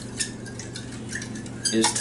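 A fork stirring a runny cocoa, brown sugar and hot water mixture in a glass bowl, clinking lightly and irregularly against the glass.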